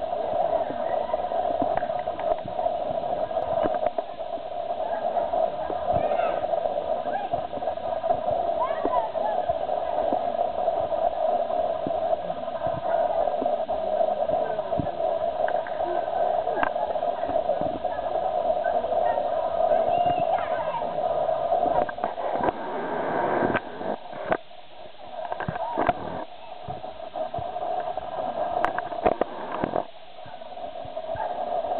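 Indistinct voices at a distance over a steady background hum, with scattered short clicks and knocks, more of them in the last third.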